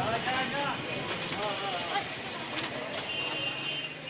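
Street noise with people talking in the background and traffic, and a high-pitched horn sounding for about a second near the end.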